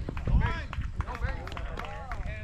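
Several voices shouting and calling out across an outdoor baseball field during a ground-ball play, with a dull low thump about a third of a second in.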